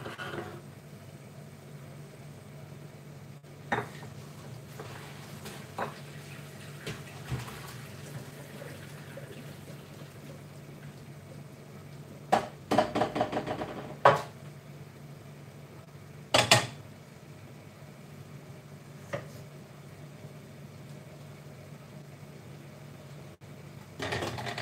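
Stainless steel saucepan and metal colander knocking and clattering as boiled potatoes are drained. There are scattered knocks, a busy run of clanking about halfway through and a loud clank a couple of seconds later, over a steady low hum.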